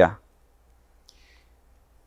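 A man's reading voice trails off right at the start, followed by a pause of near silence. About a second in there is one faint, brief small sound, like a click.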